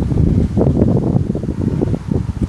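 Wind buffeting the microphone: a loud, uneven low noise with no clear tone or rhythm.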